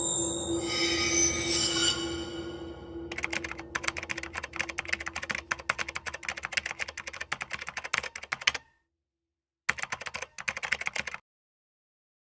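A sustained musical chord with high ringing tones fades out over the first three seconds; then a rapid typing sound effect of dense keyboard clicks runs for about five and a half seconds, stops, and comes back for about a second and a half before cutting off.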